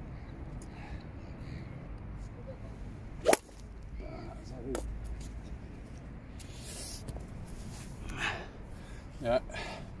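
A single sharp crack about three seconds in: a 4 hybrid golf club striking a ball off a hitting mat into a practice net. Faint low mumbling follows near the end.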